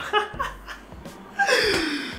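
A man laughing: a short burst at the start, a quiet pause, then a breathy, gasping laugh from about one and a half seconds in.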